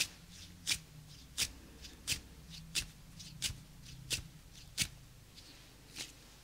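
Hand sounds: a steady rhythm of short, sharp swishes from hands brushing together, about eight in a row roughly 0.7 seconds apart, with softer ones in between.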